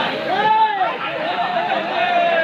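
A kabaddi raider's continuous "ha-du-du" chant: one man's voice held in a single long unbroken call that rises, then wavers at a fairly steady pitch, over the chatter of a crowd.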